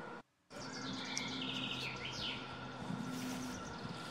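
Songbird singing a quick trilled phrase, repeated chirps for about two seconds, over quiet forest background with a steady low hum. The sound cuts out completely for a moment just before the song begins.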